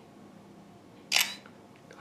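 BlackBerry Z10 screenshot shutter click from the phone's speaker, sounding once, briefly, about a second in. It confirms a screen grab taken by pressing both volume keys together.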